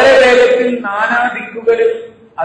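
A man's voice chanting in two loud phrases with long held notes, in the melodic manner of Quranic recitation.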